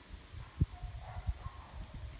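Quiet low rumble with a few soft thumps, the sharpest about half a second in, from a handheld camera being carried by someone walking.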